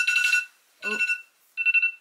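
An alarm going off: a steady high electronic tone sounding in three pulses, the first the longest.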